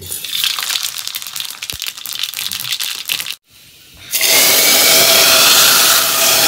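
Cooking over a wood fire: dense crackling and spluttering for about three seconds. After a short break comes a loud, steady hiss of steam and sizzling from a pot of stinging-nettle saag.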